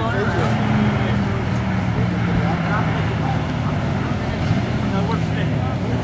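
Nissan 300ZX (Z31) drift car's engine running at a steady, fairly constant pitch as the car slides around the track, with indistinct voices over it.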